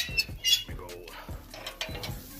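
Santa Maria grill's crank and steel lift cable squeaking and clicking in short bursts as the cooking grate is raised higher over the wood fire.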